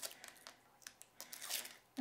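Release paper being peeled off foam tape strips: faint paper crinkles and small clicks, then a soft rasp of peeling in the second half that stops just before the end.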